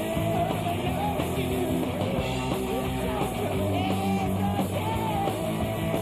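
A garage-punk rock band playing live: electric guitar, bass guitar and drums running through a song at a steady full level, with a wavering melodic line above the band.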